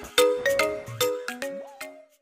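Cartoon intro jingle: a quick tinkling melody of chiming notes, about four or five a second, with a short rising glide near the end as it fades out.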